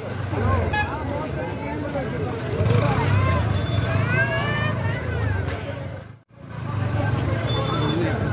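Crowd chatter and hubbub of a packed street fair over a steady low rumble, with a few high rising whistle-like glides about four seconds in. The sound cuts out for a moment about six seconds in, then the crowd noise resumes.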